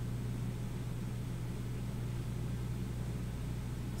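Steady low electrical hum with a faint even hiss, unchanging throughout: background room noise.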